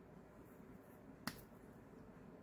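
Near silence broken by one sharp click about a second and a quarter in: the cap being pulled off a Calice gel lip liner pencil.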